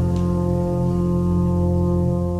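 Recorded jazz ensemble music holding one sustained chord, steady and unbroken: the closing chord of the piece.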